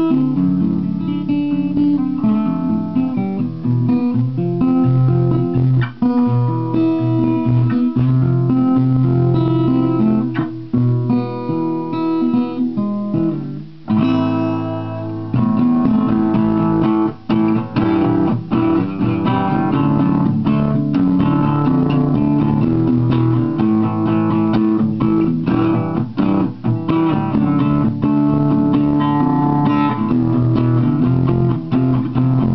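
Takamine Santa Fe SF-95 acoustic guitar played continuously, with a brief drop in loudness about fourteen seconds in before the playing picks up again.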